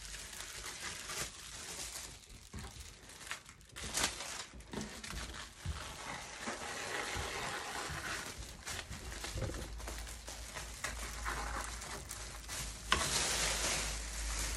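Scissors cutting around the edge of a sheet of clear plastic fused over foil crisp packets: irregular snips with the plastic crinkling. Near the end a louder, denser plastic rustle.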